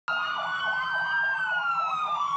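Ambulance siren sounding: a long tone that rises slightly and then slowly falls, over a faster warbling tone beneath it.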